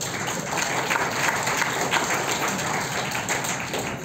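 Audience applauding: a dense patter of many hands clapping that starts suddenly and thins out near the end.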